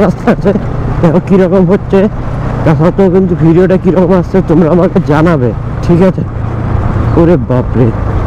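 A man talking over the steady drone of a Bajaj Pulsar NS200's single-cylinder engine, which is running at low road speed. The talk breaks off about six seconds in, leaving the engine drone alone apart from a brief word near the end.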